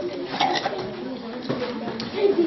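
A dove cooing over the chatter of children, with a few sharp clicks of spoons against plastic bowls.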